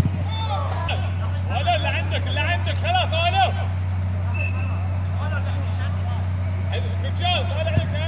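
Players shouting and calling out during an amateur football match, over a steady low hum, with a few sharp knocks.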